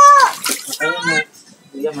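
Water splashing and sloshing in a plastic baby tub as a kitten is dipped and washed by hand. A high, drawn-out voice is the loudest sound; it ends just after the start, a shorter call comes about a second in, and it goes quiet briefly before the end.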